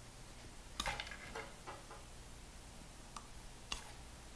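Faint clicks and small handling noises as the cable connectors are pulled off a studio monitor's tweeter terminals. There is a small cluster of clicks about a second in and a sharper single click near the end.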